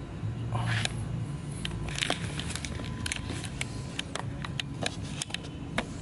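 A string of small, irregular clicks and taps from hands working the camera and telescope, over a steady low background hum.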